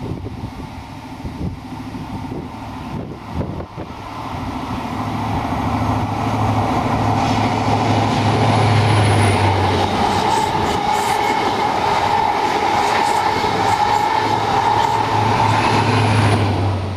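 InterCity 125 High Speed Train passing close by: the Class 43 diesel power car's engine running under power, growing louder over the first few seconds as it approaches. The coaches then roll past with a steady high whine over the engine.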